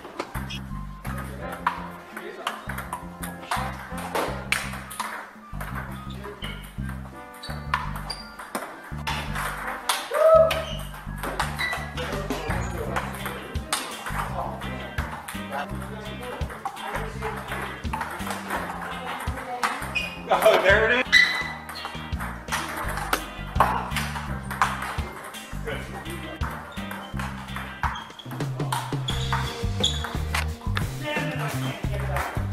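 Table tennis balls clicking off paddles and the table in quick rallies, over background music with a steady repeating bass.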